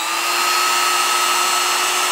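Cozyel budget palm router's brushed motor running free at full speed with no bit fitted: a steady high whine, super duper quiet for a router.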